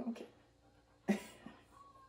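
A brief spoken "oh, okay", then about a second in a single short breathy vocal sound that fades quickly, against a quiet room.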